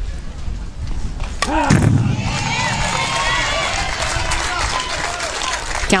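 A softball bat strikes the pitch about a second and a half in, a sharp crack that fouls the ball off, followed by crowd voices shouting and cheering in the stands.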